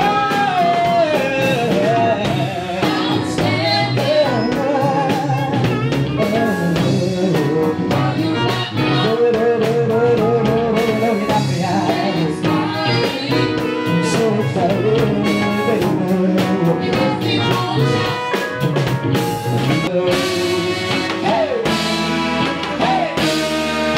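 Live R&B band playing, with a drum kit beat, electric bass, guitar and keyboards, and vocalists singing long wavering notes over it.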